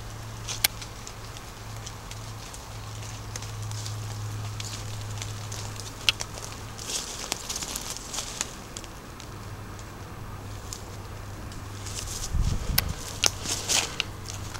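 Footsteps and rustling on a woodland path of dry leaves and twigs, with scattered sharp clicks and crackles and a low thump near the end, over a steady low hum.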